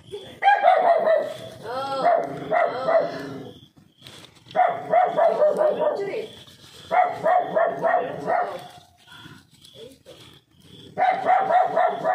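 A dog barking in rapid bouts, four runs of quick barks with short pauses between them.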